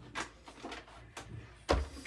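A few light knocks, then a louder, deeper thump near the end as a chair is pulled up to the table.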